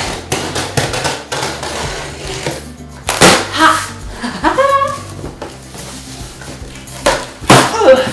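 Packing tape on a cardboard shipping box being slit and torn open, a quick run of scratchy cuts and rips in the first few seconds. Background music plays underneath, with short vocal exclamations in the middle and near the end.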